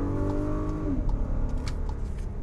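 Volkswagen Atlas V6 engine revving under hard acceleration. The pitch climbs steadily, then drops suddenly about a second in as the automatic gearbox shifts up.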